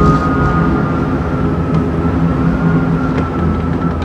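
Steady low mechanical rumble with several held droning tones, like an engine running, with a few faint clicks.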